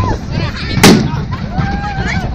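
A single loud gunshot about a second in, with a short echo after it, over shouting voices.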